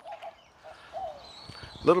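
Faint bird calls: a few short chirps, the last a small rising-and-falling one, in a lull outdoors.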